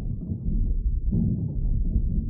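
Electronic industrial-techno track built from generated factory-machinery noise and a heavily distorted synth, muffled so that only a low rumble remains, with a slow throbbing pulse swelling a little over a second in.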